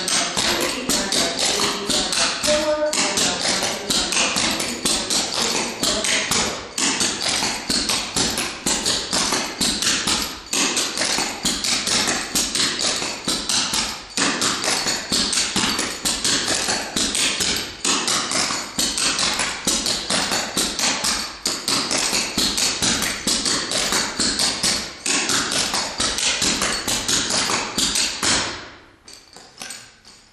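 Clogging shoe taps striking a wooden floor in fast, continuous strings of beats, the scuff, pop, flap, step rhythm of repeated triple burtons. The tapping stops about a second and a half before the end.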